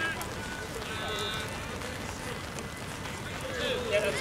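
Players shouting short calls across the pitch: a brief call about a second in and more voices just before the end, over a steady background hiss.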